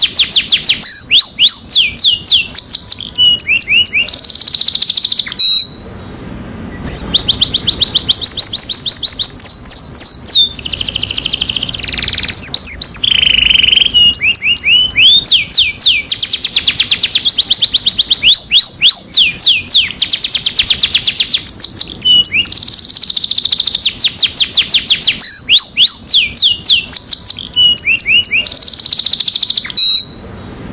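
Domestic canary singing a long, loud song of fast trills: rapid runs of repeated high notes, some rising and some falling, broken by buzzy rasping phrases. There is a short pause about six seconds in.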